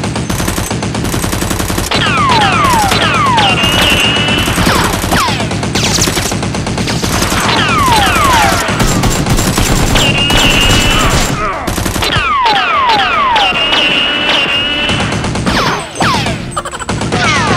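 Automatic gunfire sound effects in rapid continuous bursts, laid over the toy-blaster fight, with repeated falling whistles like rounds whizzing past, over background music. The fire lets up briefly about three-quarters of the way through, then resumes.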